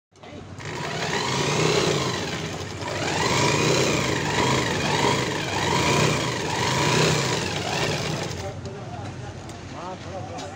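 A belt-driven sewing machine powered by a small Umbrella electric motor, running in stretches with its pitch rising and falling several times as it speeds up and slows down. It dies away about eight and a half seconds in.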